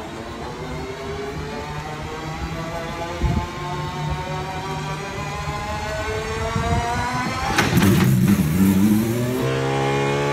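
Aston Martin Valkyrie's 6.5-litre naturally aspirated V12 running at low revs as the car pulls away, its pitch slowly creeping up. Near the end it gets louder and rises as the engine is revved harder, then settles into a steady higher note.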